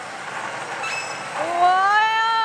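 Millionaire God pachislot machine effects over the din of a pachinko parlour: a few short pings, then about a second and a half in a loud, long tone that rises slowly in pitch, as the machine's "VV" screen effect appears.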